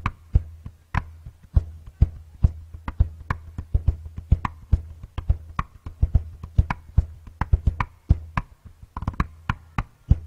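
Large West African calabash, a big gourd turned upside down, played by hand like a drum kit: a quick, busy rhythm of sharp strikes, about three to four a second.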